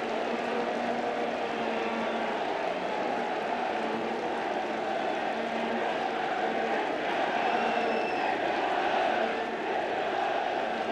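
Football stadium crowd chanting and singing together, a steady mass of voices with no break.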